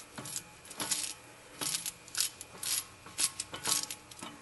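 Irregular sharp metallic clicks and clinks, about nine or ten of them, as a loosened fan clutch is spun off the water pump shaft by hand and its metal parts knock together.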